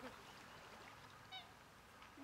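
Near silence, broken once about two-thirds of the way through by a single faint, brief call.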